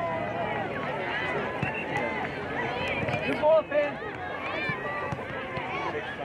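Many overlapping voices of spectators and players shouting and calling during soccer play on an open field, with one louder shout about three and a half seconds in.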